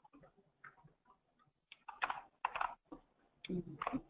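Faint, irregular clicks and taps of a computer keyboard and mouse, most of them in the second half.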